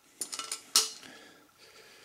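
Clecos being released and pulled out of pre-drilled aluminium aircraft parts with cleco pliers: a few small metallic clicks and clinks, the loudest a little under a second in.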